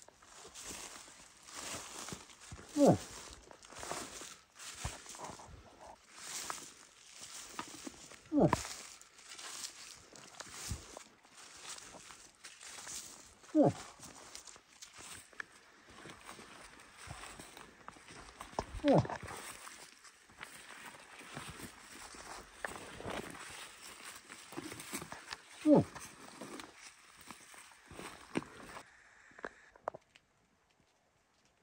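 A hunter's imitation bull moose grunts: five short, loud calls, each dropping sharply in pitch, about every five to six seconds. Between them come footsteps crunching on a dirt road and clothing rustling.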